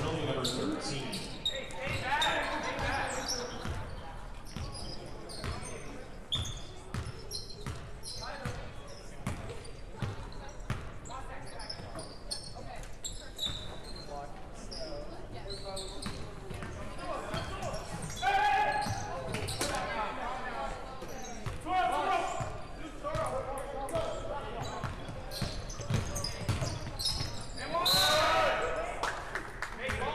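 Live basketball game in an echoing gym: a ball dribbled on a hardwood court, short high squeaks of shoes, and players and spectators calling out, with louder shouts a few times.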